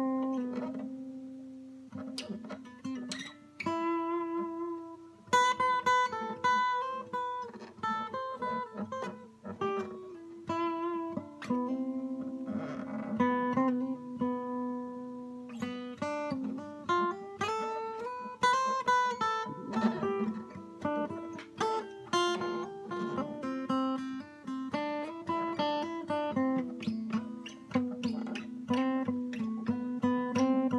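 Steel-string acoustic guitar played solo: plucked single notes and chords that ring on, with a new note or chord coming every second or so.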